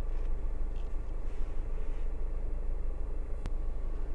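Hyundai Grand i10's 1.2-litre petrol engine idling steadily, heard as a low even rumble from inside the cabin, with one faint click about three and a half seconds in.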